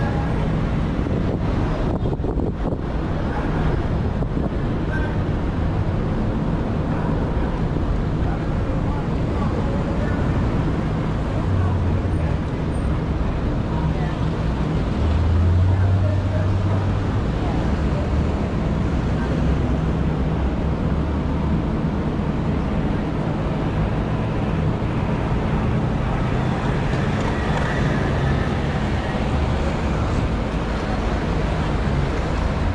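City street traffic: a steady rumble of car engines and tyres, with a louder low engine hum about halfway through.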